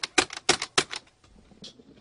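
Keys being tapped rapidly to punch in figures, a quick run of sharp clicks that stops about a second in.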